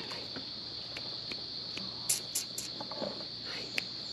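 Insects trilling steadily in a high-pitched chorus, with a few short, sharp higher chirps about halfway through.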